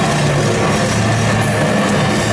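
Live metal band recorded loud from the crowd: distorted electric guitars and bass holding a steady, droning low chord with little drumming.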